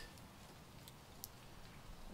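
Near silence: faint outdoor room tone, with two faint clicks about a second in.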